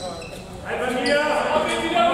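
Players' voices calling out in an echoing sports hall during a handball game, with a handball bouncing on the hall floor.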